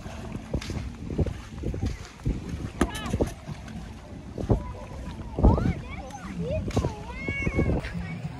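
Wind rumbling on the microphone outdoors, with distant voices of people calling and shouting at the water's edge.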